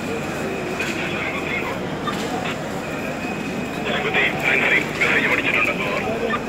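A dense crowd of pilgrims pressing up temple steps: a steady din of many voices, with loud shouting between about four and five and a half seconds in.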